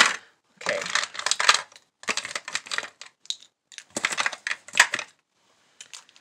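Plastic lipstick and lip gloss tubes clicking and clattering against one another as they are sorted through by hand, in several bursts of rapid clicks.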